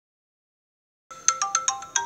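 A short, bright chiming melody like a phone alarm ringtone, starting about a second in after silence: five quick notes at different pitches, each with a ringing tail.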